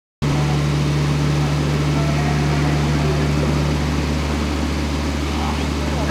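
A steady low electrical hum under a constant hiss of background noise, the sound cutting out for a moment right at the start.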